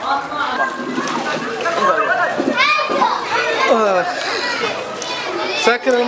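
Several children's voices talking and calling out over one another.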